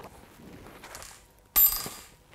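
A small metal part set down on a hard surface about one and a half seconds in: one sharp clink with a brief high ringing that fades out, after faint handling noise.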